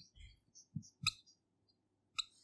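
Faint, short squeaks and a few light taps of a marker pen writing on a whiteboard.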